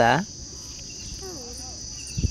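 Steady, high-pitched chirring of insects.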